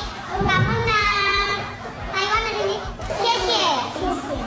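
A high-pitched, child-like voice making three drawn-out vocal sounds without clear words.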